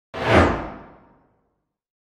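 A single whoosh sound effect for an animated logo intro, swelling quickly and dying away over about a second with its pitch falling.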